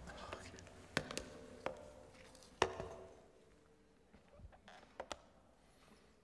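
Scattered light taps, clicks and knocks of a laptop and papers being handled on a lectern, the sharpest about a second and two and a half seconds in, with a few more near the end.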